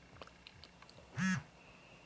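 HTC Droid Incredible's vibration motor giving one short buzz as the phone powers up on reboot, rising and then falling in pitch as the motor spins up and stops. A few faint ticks come before it.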